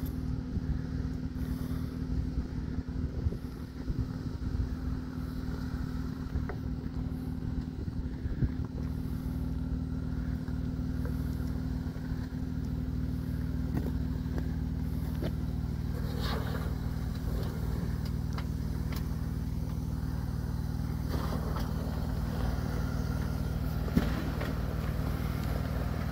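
Off-road Jeep engine running at a steady low speed, an even drone that holds one pitch throughout, with a few faint clicks in the second half.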